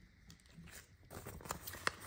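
Faint handling noise: soft rustles and light taps from about a second in, with one sharp click near the end, as a plastic floss organizer is put down and a paper chart key is picked up.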